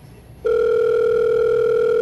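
Telephone line tone heard through the handset: one loud, steady electronic tone that starts about half a second in and holds without wavering.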